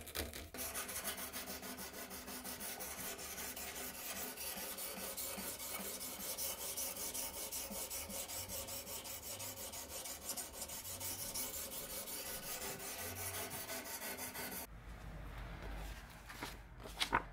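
Sharpening stone on the guide rod of a Ruixin Pro fixed-angle knife sharpener, rasping along a steel knife edge in quick, repeated back-and-forth strokes. It stops abruptly about a second before the end.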